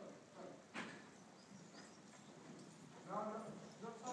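Faint hoofbeats of a Lusitano horse moving over the sand footing of a riding arena, with one sharp knock about three-quarters of a second in.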